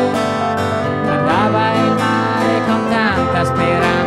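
Live band music: a strummed acoustic guitar with a keyboard playing along.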